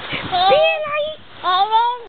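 A baby vocalizing: two drawn-out, high-pitched sounds that slide in pitch, the first starting about a third of a second in and the second near the end.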